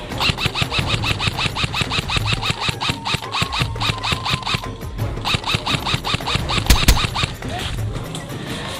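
VFC HK416D airsoft rifle firing in rapid strings, about eight shots a second, with a short break about five seconds in; it stops shortly before the end. BBs strike twigs in the undergrowth. Background music plays underneath.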